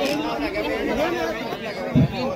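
Men's voices talking and calling over one another, with a short, loud low thump near the end.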